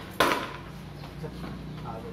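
A single sharp crack of a cricket bat striking the ball, dying away within a fraction of a second.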